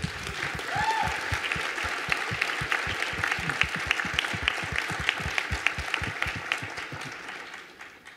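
Audience applauding, dense and steady, dying away over the last second.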